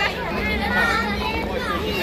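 Young children's voices chattering over a low steady hum of street noise.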